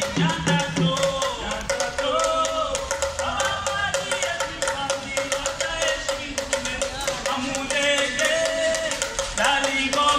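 Live Mozambican traditional music: singing over acoustic guitar and drums, with a steady, fast rhythm of percussion strokes running throughout.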